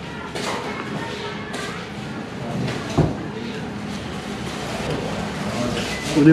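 Eatery room ambience with faint background voices and a single dull thud about halfway through.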